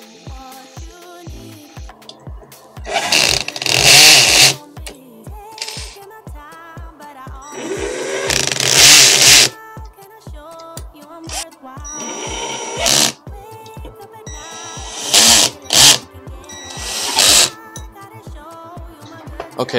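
A cordless drill driving M4 × 8 mm screws into a gear drive's back plate and hanger adapter in about six short runs. The longest and loudest runs come about three and eight seconds in. Background music with a steady beat plays underneath.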